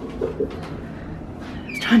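Bathroom extractor fan running with a steady buzzing hum, which comes on with the bathroom light; it is so loud.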